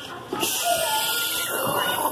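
Indoor hubbub of a busy play area, a steady hiss of background noise with faint, distant children's voices; it starts abruptly about half a second in.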